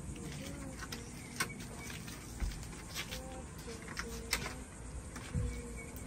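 A few sharp clicks at irregular intervals as the buttons and handle of a push-button keypad door lock are worked.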